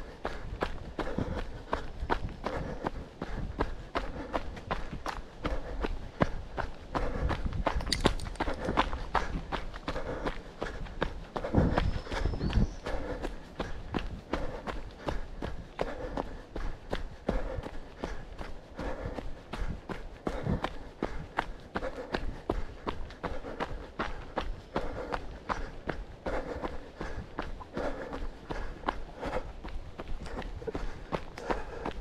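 A runner's footfalls on a dirt trail in a quick, steady rhythm. A louder low rumble comes in about twelve seconds in.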